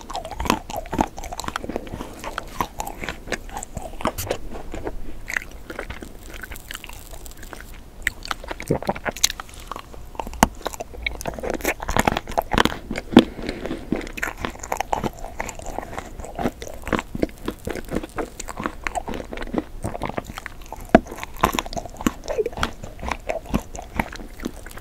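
Close-miked chewing of crunchy food: a dense, irregular run of sharp crunches and mouth clicks.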